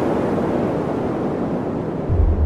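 A sound-design whoosh in an animated logo intro: a rushing, wind-like swell of noise that has built up and holds steady, with no tune or voice in it.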